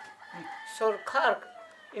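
A rooster crowing faintly in one long, drawn-out call behind a man's speech.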